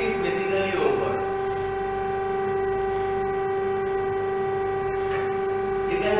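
Steady hum of a computerized Brinell hardness testing machine, one unchanging pitch with overtones, as it is switched from load to unload.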